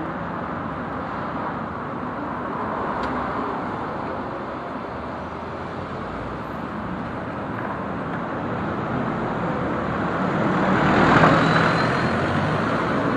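City street traffic: buses and cars running past at close range, a steady rumble of engines and tyres that swells loudest near the end as a vehicle passes close by.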